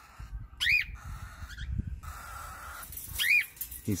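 Cockatiel giving two short chirps, each rising then falling in pitch, about two and a half seconds apart, over faint rustling.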